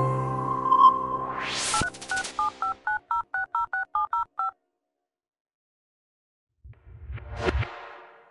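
Intro jingle: a held synth chord fades out under a rising whoosh. Then comes a quick run of about a dozen telephone keypad dialing tones, about five a second. A short low whoosh follows near the end.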